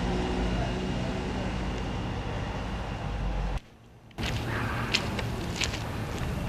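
A motor vehicle engine running steadily with a low hum. It cuts off abruptly a little past halfway, and after a short gap there is outdoor noise with a few sharp clicks.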